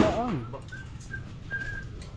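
A short voice sound at the start, then three short, high whistled notes about half a second apart, the last one a little longer.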